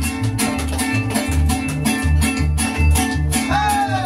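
Mariachi band playing an instrumental passage: guitars strumming a quick, even rhythm over guitarrón bass notes, with a falling pitched line coming in near the end.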